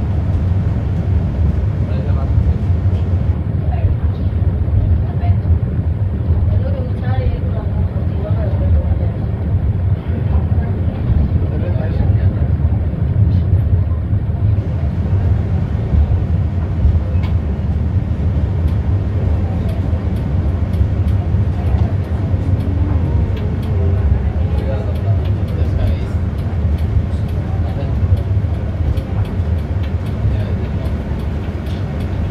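Steady low rumble of a funicular car running on its track, heard from on board, with faint muffled voices in the background.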